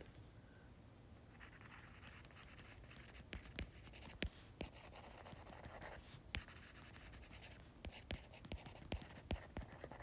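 Faint tapping and scratching of a stylus on a tablet screen during handwriting: a string of light, irregular clicks, beginning about a second and a half in.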